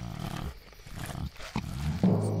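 Holstein cow mooing, a low drawn-out moo.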